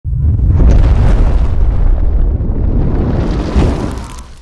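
Cinematic sound effect for an animated logo reveal: a loud, deep rumbling boom that starts suddenly, swells once more near the end and begins to fade.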